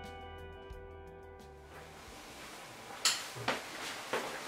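Soft background music with sustained notes that stops about a second and a half in, leaving quiet room hiss. About three seconds in there is a sharp click, then a smaller knock half a second later, as a door is opened.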